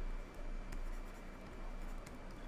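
Stylus writing on a tablet: faint scratching strokes with a few sharp taps of the pen tip.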